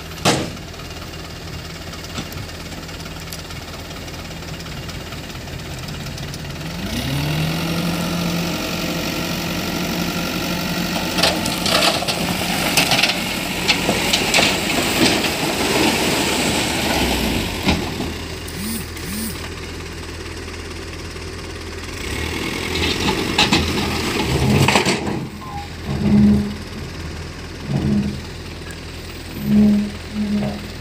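Toyota Dyna dump truck's diesel engine idling, then rising in pitch about seven seconds in and holding there while the tipped bed dumps its load. Fill soil and rocks slide and tumble out of the bed, with a second spell of sliding a little later. Several short, loud sounds come near the end.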